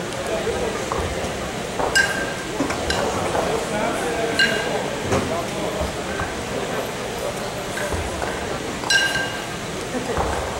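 Pairs of steel competition kettlebells knocking together with a ringing metallic clink, a few times, about two, four and a half and nine seconds in, as the bells are cleaned and racked during long-cycle reps. A steady murmur of voices runs underneath.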